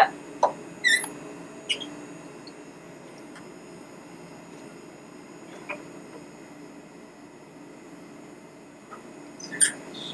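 Steady hum of a running cryostat, with a few short high squeaks: about a second in, just before two seconds, and a louder cluster near the end.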